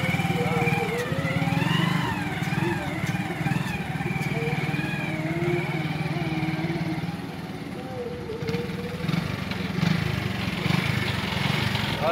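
Hero Splendor motorcycle's small single-cylinder four-stroke engine running steadily at low speed while the bike is ridden slowly up a ramp. Its level dips briefly about two-thirds of the way through.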